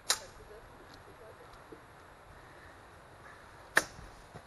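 Two sharp, cracking impacts of blows in a full-contact sword-and-shield fight, one right at the start and a slightly louder one near the end, with little between them.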